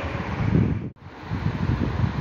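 Steady background noise with no speech, heaviest in the low range, breaking off for an instant about a second in where the recording is cut and then carrying on.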